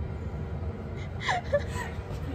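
A woman's brief laugh, a short high cry falling in pitch a little past a second in, over the steady low hum of a train carriage.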